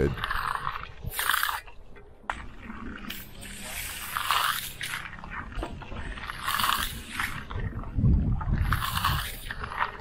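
Steel hand trowel scraping across the firming surface of a fresh concrete slab in repeated sweeping strokes, about one a second, on the final smoothing pass.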